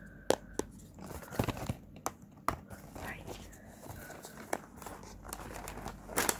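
Cardboard packaging handled close to the microphone: a few sharp taps and stretches of crinkling.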